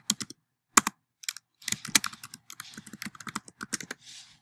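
Typing on a computer keyboard: a few separate key clicks in the first second, then a quick run of keystrokes through the second half.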